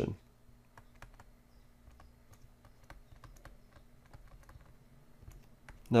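Faint, irregular light clicks and taps of a stylus writing on a tablet screen, over a faint steady low hum.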